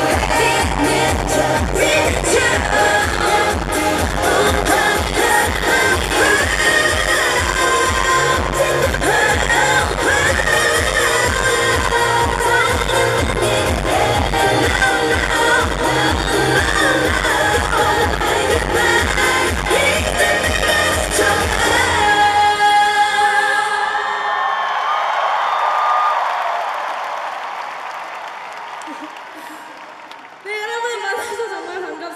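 Female pop vocalist singing live over an amplified dance-pop backing track with a steady beat; the song ends about two-thirds of the way through. A stadium crowd cheers after it, fading away toward the end.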